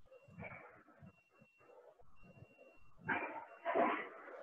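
A dog barking twice in the background, two short barks close together near the end.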